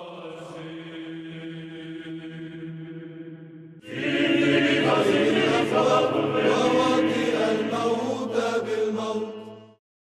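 Orthodox church chanting over a sustained drone note. About four seconds in, louder choral chant music starts suddenly and runs until it cuts off just before the end.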